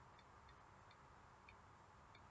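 Near silence: quiet room tone with a few faint, irregularly spaced small clicks, about one every half second.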